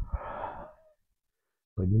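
One heavy breath from a man in the middle of a breathing exercise, lasting about a second and then cut off into silence. His speech starts near the end.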